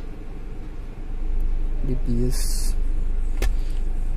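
A motor vehicle's engine running with a low, steady rumble that grows louder about a second in, with a brief sharp click near the end.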